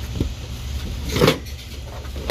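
Store merchandise being handled in a wire display basket: a small click just after the start, then a short, louder scrape about a second in, over a steady low rumble.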